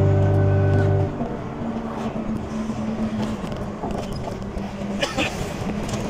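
A music track cuts off about a second in, leaving the steady rumble of a vehicle travelling at highway speed: road and engine noise with a faint low hum.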